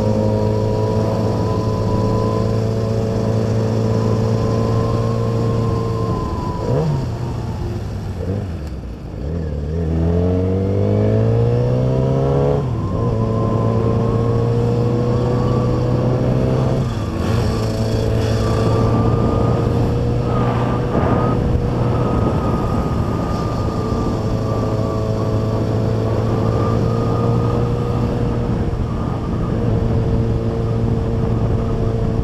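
Motorcycle engine running at a steady cruise, easing off about seven to nine seconds in, then rising in pitch as it accelerates, with gear changes about twelve and seventeen seconds in before it settles back to a steady cruise.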